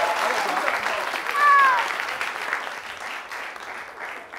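Studio audience applauding, dying away over the last second or two. A single voice calls out briefly about a second and a half in.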